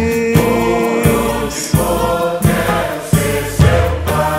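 A Brazilian song recording between sung verses: backing voices hold long notes over a steady bass line and light percussion.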